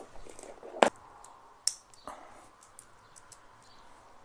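Clicks and light metallic ticks from a stainless steel watch bracelet being handled and fastened on the wrist. The sharpest click comes about a second in, another just under two seconds in, and smaller ticks follow.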